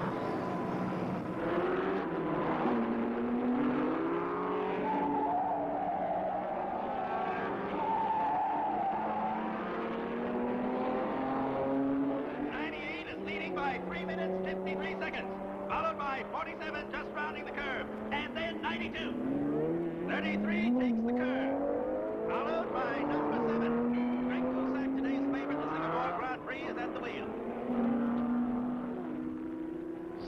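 Several racing car engines revving and passing, their pitch rising and falling and overlapping.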